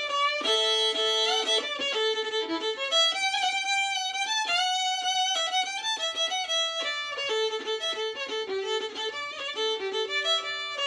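Solo fiddle playing a tune in a quick run of bowed notes.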